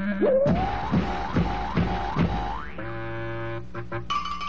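Cartoon sound effects over the soundtrack music: a quick rising glide, then about four boing-like swoops that dip and rise again in quick succession, then a steady held tone near the end.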